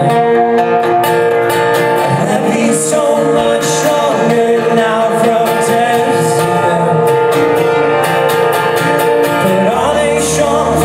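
Live acoustic guitar strumming with a cello holding long sustained notes underneath, the opening of a folk song.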